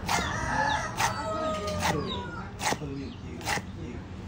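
A cleaver chopping pickled greens on a wooden chopping board, five strikes a little under a second apart. A rooster crows in the background during the first half.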